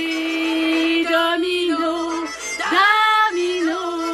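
A woman singing a French chanson, holding a few long notes with slight bends in pitch and short breaks between them.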